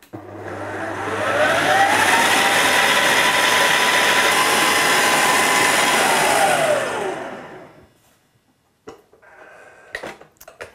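Electric stand mixer's motor speeding up, its whine rising in pitch over the first second or two, then running steadily at high speed as the beater creams butter and icing sugar into frosting. About seven seconds in it winds down, the whine falling in pitch, and stops.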